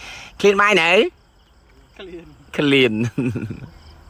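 Two short spells of talking, with crickets chirping steadily in the background between them.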